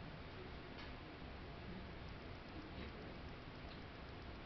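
Faint room tone, a steady low hum, with a few faint scattered ticks.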